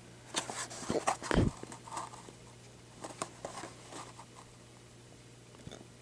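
A carded toy car's clear plastic blister pack being handled and turned in the hand: a quick run of plastic clicks and crinkles in the first second and a half, ending in a low thump, then a few scattered faint ticks.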